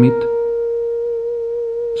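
Background music holding a single steady note with a few faint overtones, slowly fading.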